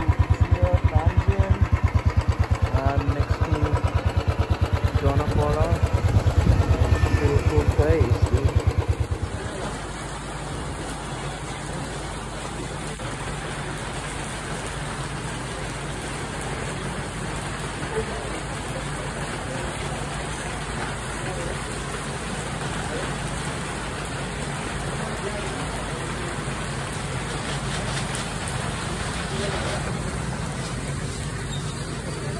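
A Royal Enfield motorcycle engine running under way, a fast, even low thumping. About nine seconds in it cuts off suddenly, and steady rain on wet pavement follows.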